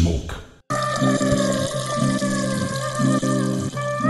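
Hip hop beat: a falling sweep fades into a brief silence just over half a second in, then the beat comes back in with a sustained melodic synth loop.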